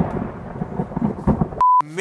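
Thunderstorm sound effect: rumbling thunder with rain, cutting off suddenly about one and a half seconds in, followed by a short steady beep.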